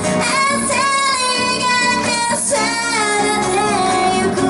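A woman singing a pop song live into a microphone, with acoustic guitar and bass accompanying her, in long held notes that bend in pitch.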